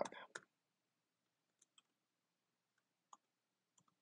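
Faint computer keyboard keystrokes: about six single key clicks, spaced unevenly over a few seconds, as a command is typed slowly into a terminal.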